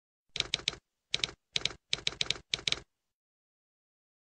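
Typewriter key strikes used as a sound effect, about fourteen sharp clacks in five quick groups, stopping a little under three seconds in.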